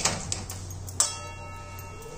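Steel spoon knocking against a steel kadai while stirring grated sweet potato in ghee: a click at the start, then a sharper strike about a second in that leaves the pan ringing with a thin, bell-like tone.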